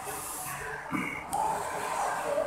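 Close-up mouth sounds of a man chewing a mouthful of rice and side dishes, with irregular wet smacks and breathy noises.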